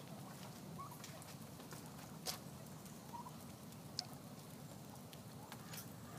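Wild turkeys calling faintly: a few short, quiet clucks and soft notes, one sharper about two seconds in and another about four seconds in.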